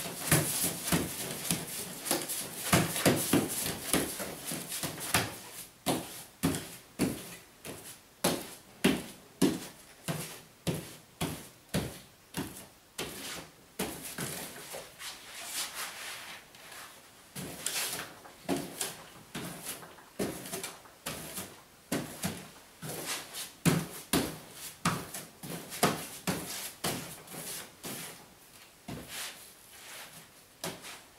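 Wide pasting brush slapping and swishing wallpaper paste across a length of paper on a pasting table, in repeated strokes about one and a half a second. The strokes go quieter about halfway through while the paper is handled.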